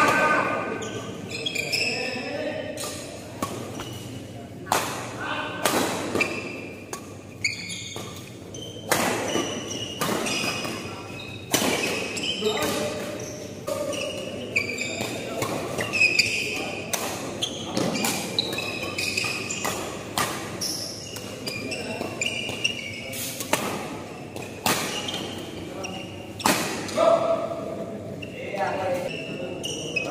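Badminton rackets striking a shuttlecock during doubles rallies: sharp cracks at irregular intervals, echoing in a large hall, with players' voices calling out between shots.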